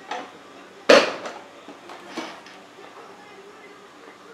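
Workshop handling noises: one sharp knock about a second in, the loudest sound, followed by a few lighter clinks and knocks.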